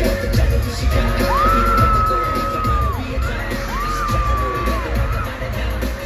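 Live K-pop concert music over the arena sound system, with a heavy, pulsing bass beat. Two long, high, held vocal cries sound over it, the first about a second in and the second about halfway through.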